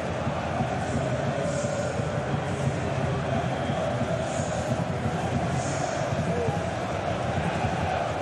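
Football stadium crowd: a steady din of many voices from the stands, with no single sound standing out.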